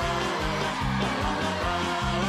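Live band playing an upbeat song, with a quick, steady bass line.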